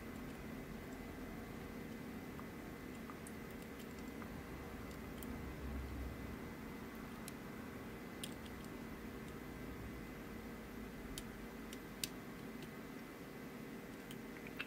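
A handful of faint, sparse clicks from a dimple pick working the pins of a pin-in-pin mortise lock cylinder under tension while the last unset pin is sought, the sharpest click near the end. A faint steady hum runs underneath.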